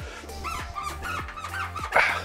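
Background music under a quick run of short, high, squeaky blips, then a brief swoosh near the end. These are on-screen pop-up sound effects.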